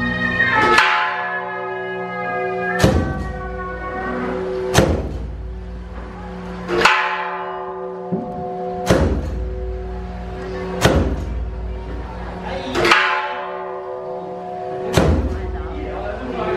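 A large metal bell struck about once every two seconds, eight strokes in all. Each stroke rings on with a cluster of tones that fades until the next.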